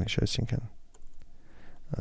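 Computer keyboard being typed on: a few separate keystroke clicks in the second half, after a short stretch of the man's voice.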